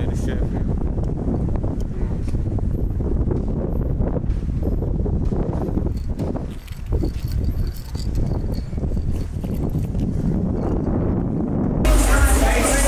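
Wind rumbling on the microphone over outdoor background noise with indistinct voices. A louder music track cuts in just before the end.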